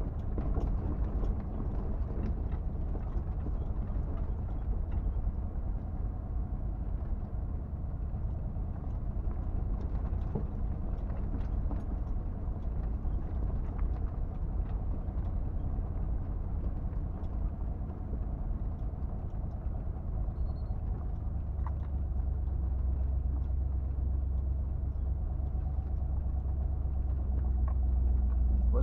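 1977 Jeep Cherokee running slowly along a rough dirt track, heard from inside the cab: a steady low engine and drivetrain rumble with scattered clicks and knocks. The rumble grows louder about three quarters of the way through.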